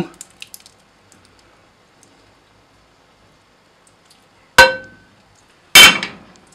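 Metal cookware knocked against the rim of a stainless steel stockpot, twice about a second apart, the first clang ringing briefly. It comes as the pan is emptied of tomato-and-flour roux into the borscht.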